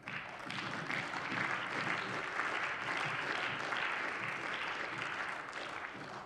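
Members of parliament applauding: steady clapping from the benches that starts the moment the speech breaks off and eases slightly near the end.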